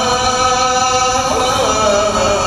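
A man's voice chanting in Arabic in long held notes, with a brief melodic turn in pitch about a second and a half in before settling on the next held note.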